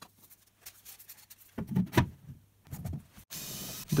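Light knocks and rubbing as a plywood adapter and PVC pipe are handled on a plastic bucket, then a little over three seconds in a cordless drill starts and runs steadily, drilling a hole through the plywood adapter into the bucket.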